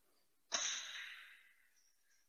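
ABB SafePlus medium-voltage circuit breaker closing under test, its close coil fired by the test set: one sudden mechanism clunk about half a second in, with a ringing decay that dies away over about a second.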